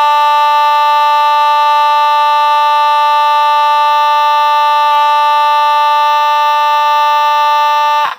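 Federal Signal Vibratone 450 Series B2 fire alarm horn (sold as the Simplex 2901-9806) sounding continuously: a loud, steady, unbroken buzzing blare at one pitch.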